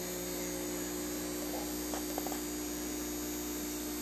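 Steady electrical hum of running aquarium equipment, holding a few fixed low pitches over a light hiss, with a couple of faint clicks about two seconds in.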